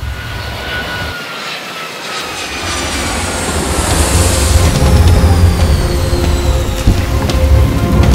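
Jet airliner engines whining as they wind down, with several high tones slowly falling in pitch, over background music with a deep pulsing bass that grows louder.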